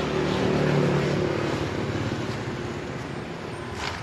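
A motor vehicle engine running close by, with a steady low hum that swells about a second in and then slowly fades away, as if passing. A short click comes near the end.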